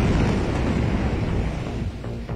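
The roar after a massive ammonium-nitrate explosion, heard through a phone's microphone: a loud, continuous rush of noise that slowly fades, with the blast wave and flying dust buffeting the microphone.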